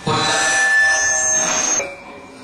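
A loud ringing tone of several steady pitches at once, starting suddenly and cutting off after almost two seconds.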